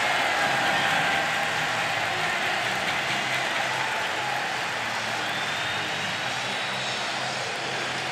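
Stadium crowd cheering for a home touchdown: a steady wash of crowd noise that slowly dies down.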